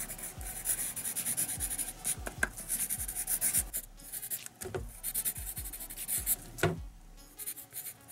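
Pencil writing on butcher paper: a quick run of short scratchy strokes, with brief pauses between words.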